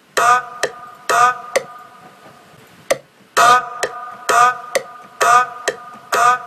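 Short, ringing percussion sample played on a MIDI keyboard in an uneven, halting pattern: pairs of hits about half a second apart, with sharp clicks between them and a pause of about a second and a half in the middle.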